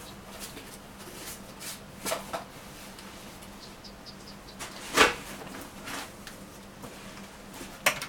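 Scattered light clicks and taps of a small screwdriver against a BlackBerry 9700's plastic and metal housing, with the sharpest click about five seconds in and another near the end. A faint steady hum lies underneath.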